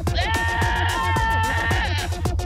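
A goat's long, human-like scream, held steady for about a second and a half, set over a dubstep track with a pulsing deep bass and drum hits.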